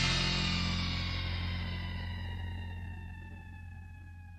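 The last chord of a rock song ringing out and slowly fading. The high end dies away first, and a few held tones last longest.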